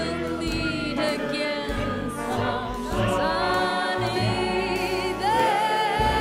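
Big band playing sustained, layered chords over bass, with a new chord coming in about three seconds in and another swelling up near the end.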